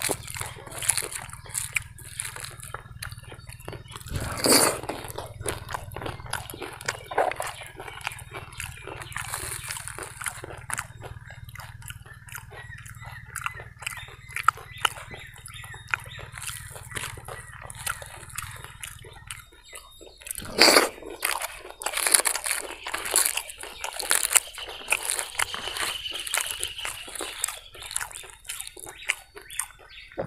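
Close-miked eating by hand: wet chewing and mouth smacks, with fingers squishing and mixing soft food such as poori, idli and vada masala on a plate, in a run of short clicks and smacks with louder bites now and then.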